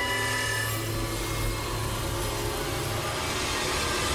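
Old wooden door creaking and scraping as it swings open, over a low steady hum that fades about halfway through.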